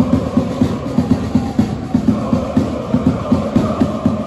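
A large crowd of football supporters chanting in unison over a steady drum beat, about three to four beats a second.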